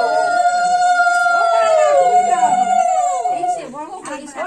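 A conch shell blown in one long, steady note while women ululate over it in gliding, wavering calls; the conch stops about three and a half seconds in and chatter takes over. This is the auspicious conch and ululation (shankha and uludhwani) sounded at a Bengali wedding rite.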